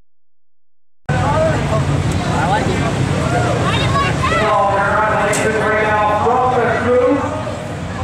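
After a quiet first second, the sound cuts in suddenly: several people talking over one another, above a steady low rumble.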